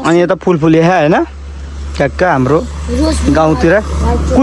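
People talking, with a steady low rumble underneath from about a second in.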